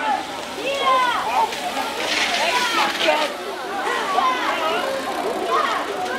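Indistinct voices of people talking at a BMX track, with a short noisy rush about two seconds in.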